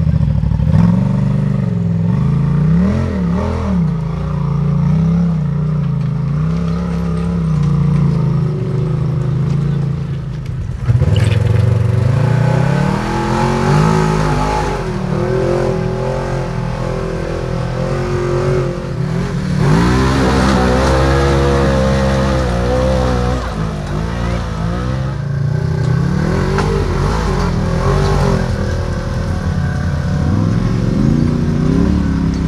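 Polaris RZR side-by-side engines revving in repeated bursts as they crawl up a stepped rock climb, the pitch rising and falling with each stab of throttle. The sound jumps suddenly louder about eleven seconds in.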